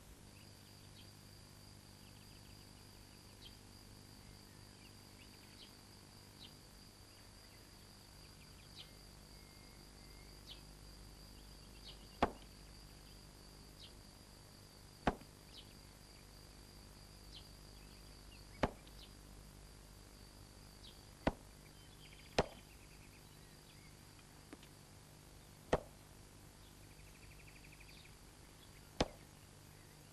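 A faint, steady, high-pitched whine, with seven sharp single clicks in the second half coming every two to four seconds.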